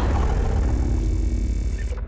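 Cinematic logo sting: a deep sustained rumble with a few held tones, starting to fade near the end.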